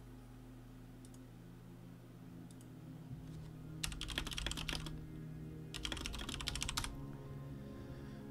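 Typing on a computer keyboard: two quick runs of keystrokes, each about a second long, roughly four and six seconds in.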